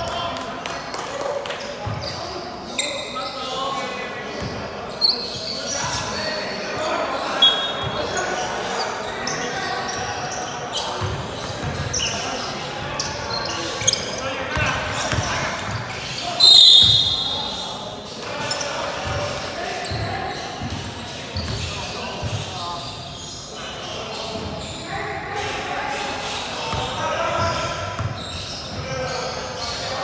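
Basketball game in an echoing indoor hall: the ball bouncing on the court, short high squeaks, and players' voices. The loudest squeak comes about halfway through.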